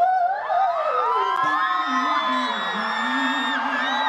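A female pop singer sings a fast, gliding vocal run live into a handheld microphone, with audience whoops and cheers rising over it.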